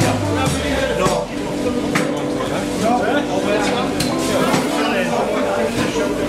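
Indoor market ambience: indistinct voices and chatter with a few sharp clinks, over background music.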